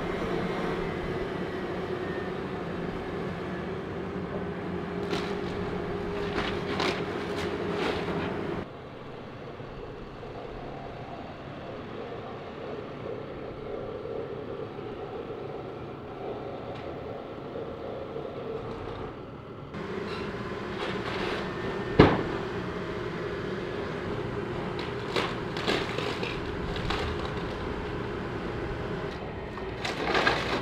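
A John Deere hydraulic excavator's diesel engine running steadily while its bucket tears into the roof, with scattered cracks and knocks of breaking wood and tin. The sound drops for about ten seconds in the middle, and a single sharp bang about 22 seconds in is the loudest moment.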